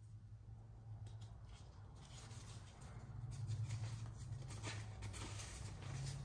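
Faint rustling and crinkling as a lens-cleaning wipe sachet is torn open and the moist wipe is pulled out and unfolded by hand, with a steady low hum underneath.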